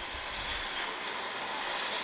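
Greyhound track's mechanical lure running along its rail toward the starting boxes: a steady rolling noise that grows slightly louder as it comes.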